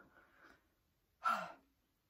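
A woman draws a faint breath, then about a second in lets out a louder, voiced sigh that falls in pitch, breathing through the burn of a superhot chili pepper.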